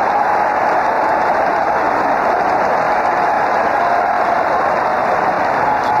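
Ballpark crowd cheering and applauding steadily in a long ovation, heard through a radio broadcast.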